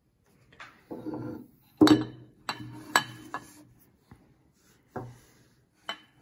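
Small glass jars and a plate clinking and knocking as wet paper-towel strips are lifted out of the jars and set down. There is a series of sharp clinks with a short ring, the loudest just under two seconds in, and a few more after it.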